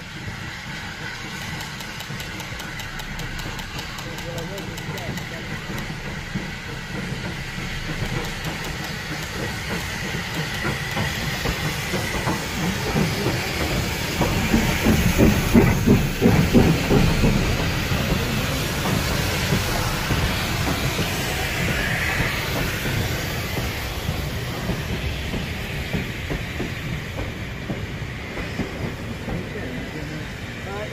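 Southern Railway N15 'King Arthur' class 4-6-0 steam locomotive No. 777 approaching and passing close by, growing steadily louder to a peak about halfway through as the engine goes past with steam hissing around its cylinders. The coaches then roll by with a steady rumble and wheels clicking over the rail joints.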